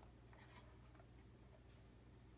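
Faint, steady electrical hum from a running CRT monitor, with a few light ticks and scratches as fingers work its front control knobs.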